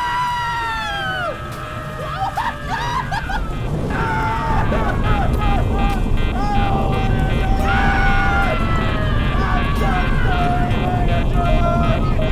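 A man laughing manically over a low rumble that swells about four seconds in. A high-pitched voice falls away in the first second or so.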